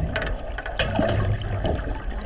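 Underwater sound heard just below the surface: water sloshing and bubbling, with scattered crackles and clicks over a low rumble.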